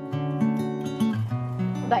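Background music led by acoustic guitar: a few held, plucked notes stepping from one pitch to the next.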